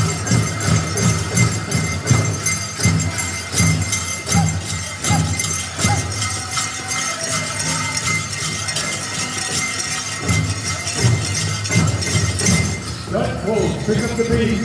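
Powwow drum group singing a grand-entry song over a steady, even beat on a large shared drum, about two to three beats a second, with dancers' bells jingling.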